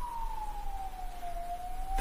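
Emergency-vehicle siren wailing: one slow tone that falls in pitch, then begins to rise again in the second half.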